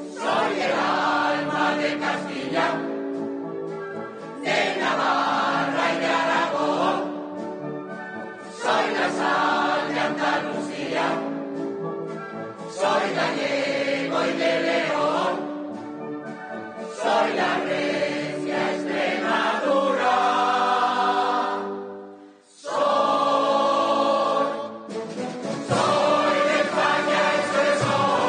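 Mixed choir singing full-voiced with a wind band accompanying, in phrases that swell in about every four seconds and fall back to softer held chords; the sound drops away briefly a little after twenty-two seconds.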